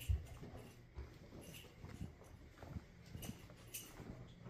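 Footsteps on a carpeted hallway floor: soft, faint thumps roughly once a second, with light rustling between them.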